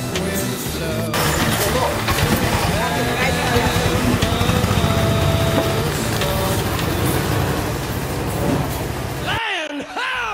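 Busy fish-market aisle ambience: overlapping voices and a low vehicle engine rumble. Music cuts off about a second in, and the market noise stops abruptly near the end.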